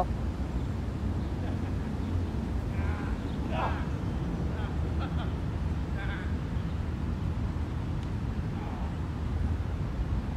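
Outdoor background: a steady low rumble, with a few faint, brief voice-like sounds about three to four seconds in and again about six seconds in.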